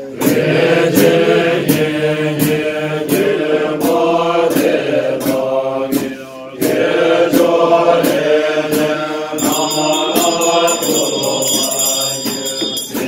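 A group of men chanting Tibetan Buddhist liturgy in unison from their texts, in a steady rhythm marked by sharp beats about every half second. The chant breaks briefly about six seconds in, and a high ringing joins about nine and a half seconds in.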